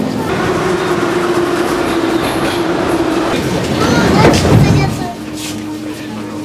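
Subway train running, a steady whine over a dense rumble, with a louder rush of noise about four seconds in before it settles again.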